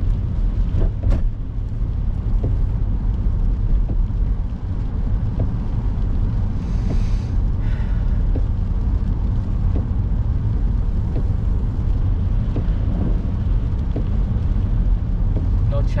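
Steady low rumble of a car's road and engine noise heard from inside the cabin, cruising in third gear at about 25 mph on a wet, slushy road. A few faint ticks and a brief hiss about seven seconds in.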